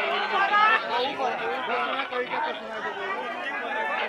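Crowd of spectators chattering, several men's voices talking over one another.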